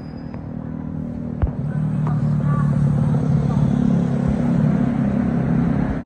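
An engine running with a steady low hum that grows louder about two seconds in. A single sharp click comes about a second and a half in.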